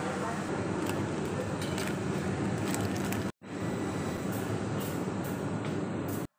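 Steady supermarket ambience: a noisy hum with indistinct voices and a few light clicks, broken by a short dropout a little past halfway.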